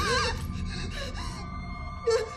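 Tense horror-film score with sustained tones, opening with a woman's quavering, frightened gasp; the music slowly fades.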